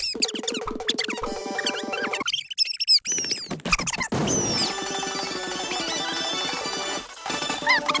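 Animated cartoon soundtrack played back four times fast: music mixed with high, squeaky chirps and quick sliding pitches.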